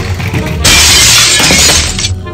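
Loud music with a long burst of crashing noise that starts about two-thirds of a second in and lasts over a second.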